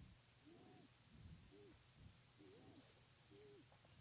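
Near silence, with faint short animal calls that rise and then fall in pitch, repeating about every half second to a second.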